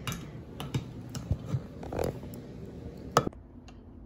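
Manual hand-held can opener clicking and ticking irregularly as it is worked around the rim of a tin can, with one sharper click near the end.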